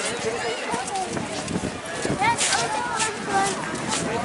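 Overlapping voices of people talking nearby on a busy pedestrian promenade, with scattered footsteps on the paving.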